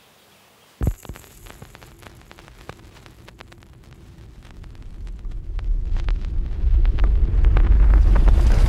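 Stylus dropping onto a vinyl record on a Technics turntable: a sharp knock about a second in, then scattered surface crackle and pops. A deep rumble swells up through the second half and becomes the loudest sound by the end.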